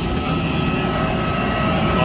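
Steady whine and rush of a parked jet airliner on the apron, with one high tone held level throughout. A low buffeting rumble of wind on the microphone runs underneath.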